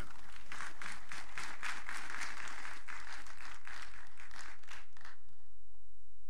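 Audience applauding after a spoken tribute. The clapping dies away about five seconds in.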